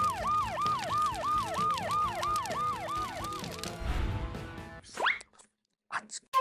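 A siren-like warning sound effect, a tone that falls over and over about three times a second for roughly three and a half seconds, over background music. A quick rising whistle follows about five seconds in.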